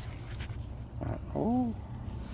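A person's short voiced sound, rising then falling in pitch, about one and a half seconds in, over a low steady hum.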